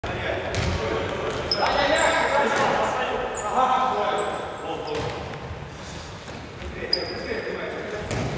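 Indoor futsal play: sports shoes squeaking in short chirps on the hall floor and the ball being struck and bouncing a few times, with players' voices calling out.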